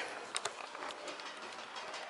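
Faint handling noise from a phone being moved about, with a couple of light clicks about half a second in over a steady low hiss.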